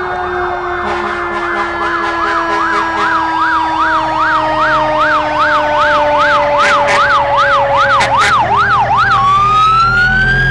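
Fire truck sirens passing in a parade: a fast yelp sweeping up and down about three times a second over a steady tone that slowly drops in pitch. After about nine seconds the yelp changes to a slow rising wail.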